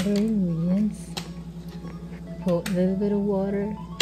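A voice making drawn-out, pitched sounds over background music: once at the start and again, with longer held notes, from about halfway to near the end. A steady low hum lies underneath throughout.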